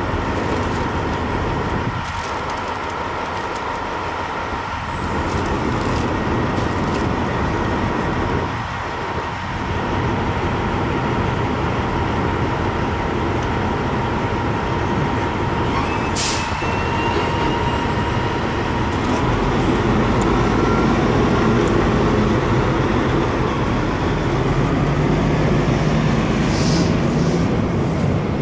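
Steady running noise of an idling semi-truck engine with a constant thin whine over it; the low rumble grows louder about two-thirds of the way through, with a few faint clicks of work on the air-hose fittings.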